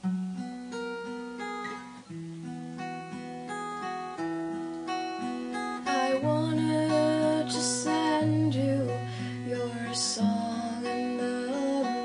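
Acoustic guitar playing the chords and picked notes of a slow pop song, growing fuller about halfway through.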